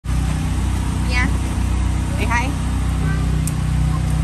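A steady low mechanical hum of a motor running, with two short snatches of voices over it, about a second in and again just after two seconds.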